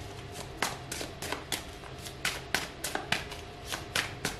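A deck of tarot cards shuffled by hand: a quick run of light card clicks and slaps, about four a second.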